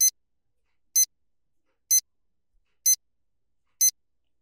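Countdown timer sound effect: five short high-pitched beeps, one a second, counting down the seconds of a five-second hold.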